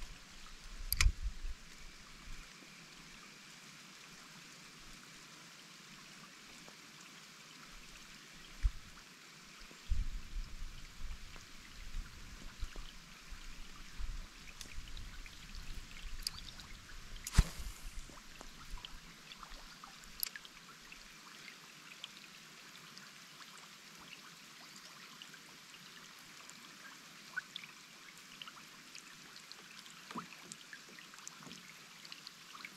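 Light rain falling on a river surface, a steady soft hiss, with scattered sharp clicks, one louder a little past the middle, and some low rumbles.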